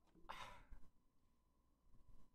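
A faint sigh, a man breathing out once for about half a second shortly after the start; otherwise near silence.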